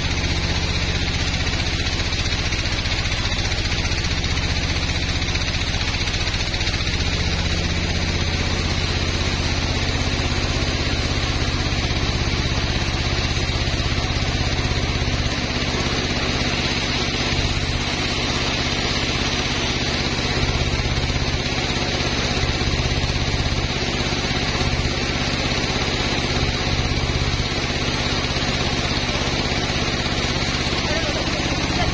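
Log band sawmill running steadily while sawing through a teak log, an even, unbroken machine hum throughout.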